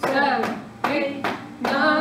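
Hands slapping on the upper belly in a steady beat, a little more than one slap a second, with a woman's voice counting aloud in time with the slaps.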